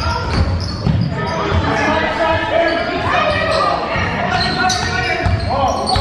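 Basketballs dribbling on a hardwood gym floor, with players' voices in a large echoing hall.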